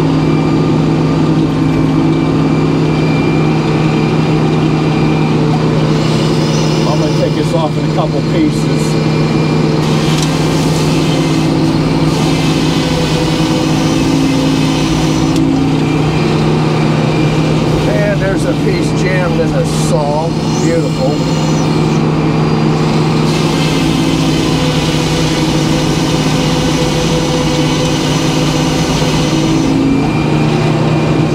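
Circular sawmill running with a steady low drone, its large circular blade sawing a white pine log. The sound turns harsher and brighter in several stretches while the blade is in the wood.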